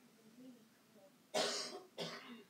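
A person coughing: one loud cough about a second and a half in, with a second cough starting at the very end.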